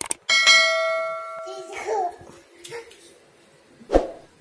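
A short click followed by a bright bell ding that rings and fades over about a second: the sound effect of a subscribe-button animation.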